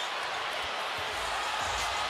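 Arena crowd noise, a steady murmur, with low thuds coming in about a second in.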